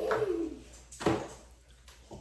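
A toddler's short voiced hum falling in pitch, then a single knock about a second in.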